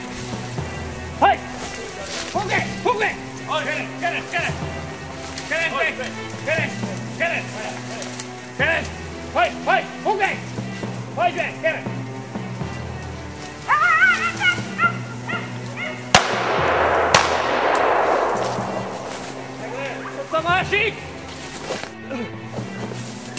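A small dog, the wire-haired fox terrier, barks and yaps repeatedly in the undergrowth while working a wild boar, with background music underneath. About sixteen seconds in, a hunting gun fires two shots about a second apart, followed by a few seconds of rushing noise.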